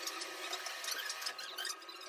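Dry steel wool (Bombril) scrubbed along a window frame: irregular, scratchy rubbing strokes, taking off leftover construction paint.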